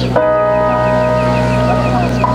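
A bell-like ringing of several steady tones starts suddenly just after the start and holds, with a quick run of short high chirps over it.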